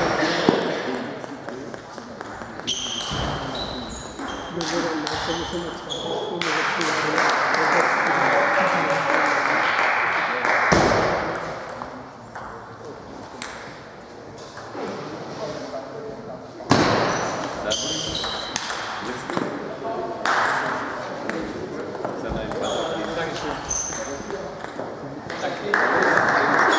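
Table tennis ball clicking back and forth between bats and table in rallies, each contact a short, bright ping. Voices carry through the hall between points.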